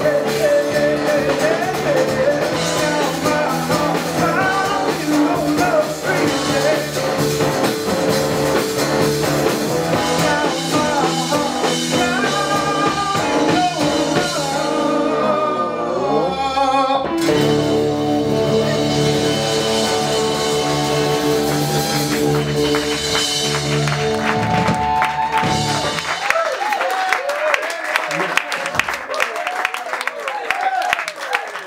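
Live rock band playing, with electric bass, electric guitar, drums and keyboards under a man singing lead; the band's sound has a short break about halfway, then stops near the end, leaving audience cheers, whoops and applause.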